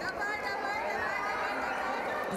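Overlapping chatter of many voices echoing in a gym hall, with no single clear speaker.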